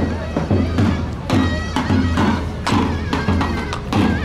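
Traditional folk music: a reedy, bagpipe-like wind melody over a steady drum beat.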